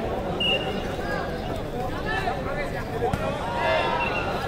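Many overlapping voices of a large outdoor crowd of spectators and players talking and calling out during a volleyball match, with a single sharp knock about three seconds in.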